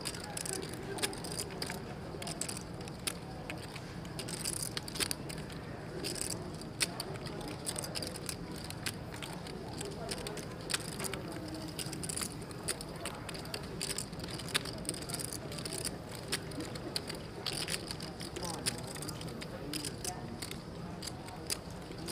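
Poker chips clicking irregularly as players handle them at the table, over a low murmur of voices in the tournament room.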